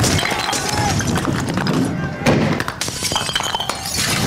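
Glass breaking and shattering repeatedly in a riot scene, with shouting voices.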